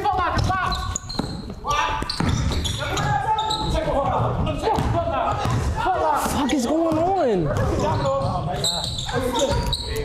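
A basketball bouncing on a gym floor amid overlapping voices and chatter, echoing in a large hall. About six seconds in, one voice calls out in a long rising and falling shout.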